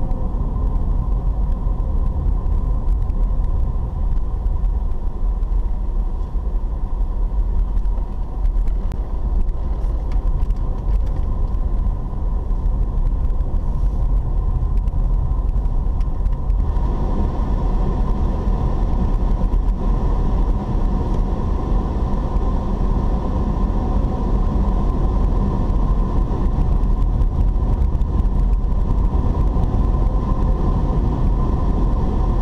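Engine and road noise heard from inside a moving car: a steady low rumble with a faint hum. A little past halfway it grows fuller and brighter.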